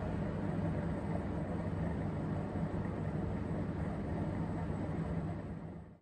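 Quiet, low steady drone with a rumbling hiss, the tail of a live free-improvisation trio performance, fading out over the last second.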